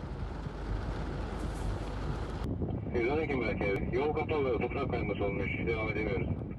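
Steady rushing noise of muddy floodwater pouring across a road. From about three seconds in, a man speaks over the noise.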